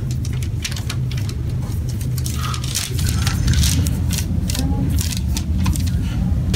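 Steady low room hum with scattered scratchy clicks and rustles, as of markers and paper being handled on a paper-covered table.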